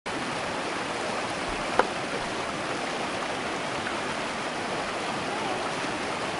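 Shallow river rapids rushing steadily over and between boulders, a close, even rush of water. A single sharp click about two seconds in.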